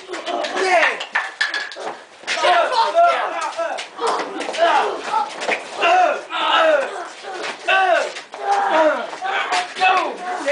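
Several voices shouting and yelling without clear words during a scuffle, with scattered short knocks and scuffs among them.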